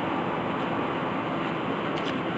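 Steady noise of light road traffic on a city street.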